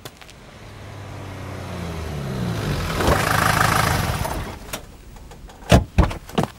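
A vehicle engine drives up, rising in pitch in steps as it accelerates and growing loud, then drops away as it pulls up. Near the end come a few sharp thuds.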